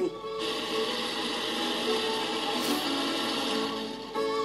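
Countertop blender running steadily, puréeing roasted guajillo and árbol chiles with water into a chile sauce. It starts about half a second in and stops just before the end, heard through a television's speaker.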